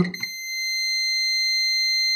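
Digital multimeter's continuity buzzer giving a steady high beep, flickering briefly and then holding from about half a second in, as the probes across a ceramic capacitor near the CPU read zero ohms: a real short circuit to ground on the board.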